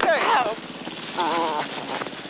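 Men's wordless exclamations of greeting during an embrace: a sliding shout at the start and a wavering cry a little past the middle. Under them runs a steady low mechanical throb.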